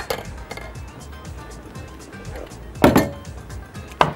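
A metal spoon clinking against a glass measuring jug of broth, with a couple of light clicks and one sharper, louder knock about three seconds in. Background music plays underneath.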